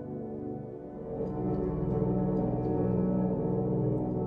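Fracture Sounds Midnight Grand sampled piano with its 'Eclipse' ambient pad layer, chords played low on the keyboard. A louder low chord comes in about a second in and is held, still relatively bright for the low register.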